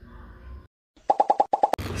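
A quick run of about seven short, bright popping blips, about ten a second, lasting under a second: an editing sound effect laid over the scene cut. Faint outdoor background comes before it.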